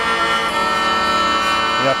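Steady drone of a vielle à manche, a medieval wheel-bowed stringed instrument. A turned wheel acts as a continuous bow, rubbing three strings so that they sound together.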